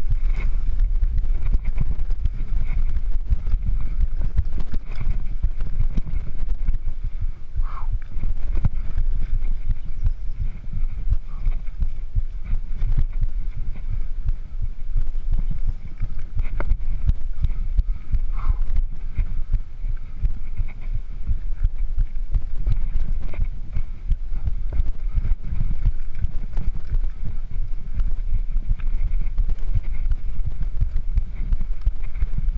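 Mountain bike rolling over a rough dirt and rock singletrack: the frame and components rattle and knock over bumps in quick, irregular succession over a steady low rumble of tyres and air on the bike-mounted microphone.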